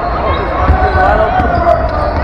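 Basketball bouncing on a hardwood gym court, a series of low thuds.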